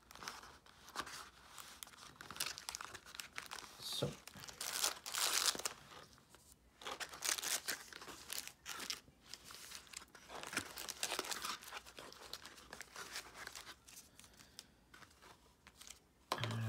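Wrapped trading card packs crinkling and rustling in irregular bursts as they are handled and lifted out of a cardboard box, with the loudest bursts near the middle.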